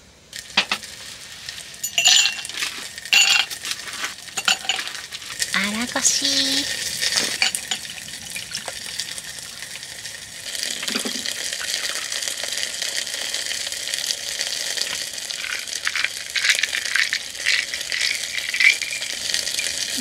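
Chicken pan-frying in oil in a lidded pan, a steady sizzle, with sharp clinks of ice and glass early on. About halfway through, a fizzy lemon sour is poured over ice in a glass.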